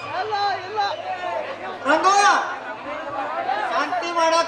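Speech: actors' voices talking over the stage microphones, without a break.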